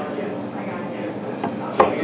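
Restaurant background noise with faint, indistinct voices, and one sharp knock near the end.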